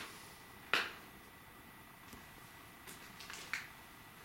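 A single sharp click or snap about three-quarters of a second in, with a few faint ticks near the end, over a faint steady high-pitched tone.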